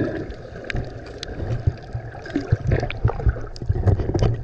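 Water heard underwater through the camera: a muffled, churning low rumble with many scattered sharp clicks and crackles as a snorkeler swims along the rocks.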